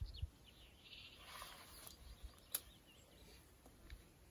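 Faint bird chirps over quiet outdoor background, with a few soft thumps at the start and brief clicks, the sharpest about two and a half seconds in.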